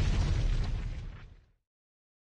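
Logo-reveal sound effect: an explosion-like boom with a deep rumble, dying away over the first second and a half.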